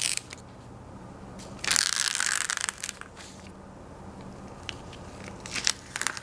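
Blue painter's tape being peeled off watercolour paper: a short crackling rip at the start and a louder one about a second long a couple of seconds in, with small clicks and crinkles of paper being handled near the end.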